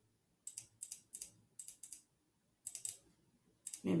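Quiet computer clicking in five short clusters of two or three quick clicks each over the first three seconds, made as a brush is stamped over and over on the canvas of a drawing program. A voice starts just before the end.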